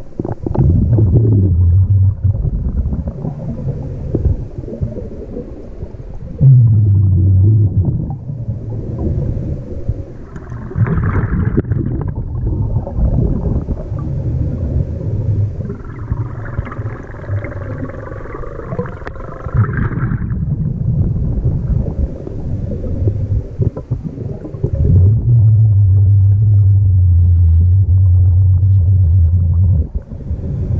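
Scuba diver breathing through a regulator, picked up underwater by the camera: a short high hiss on each inhale, about every five to six seconds, between long low rumbling burbles of exhaled bubbles.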